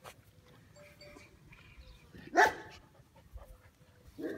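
Caucasian Mountain Dog puppy giving a single short bark about two seconds in.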